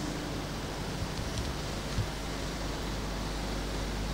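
Room tone: a steady hiss with a low hum, with one faint tap about two seconds in.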